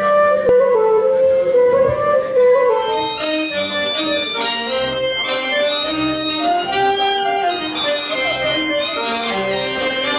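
Breton fest-noz dance music from a small folk band. A wind-instrument melody is heard alone at first, and about three seconds in a fuller accompaniment joins it with a steady low beat.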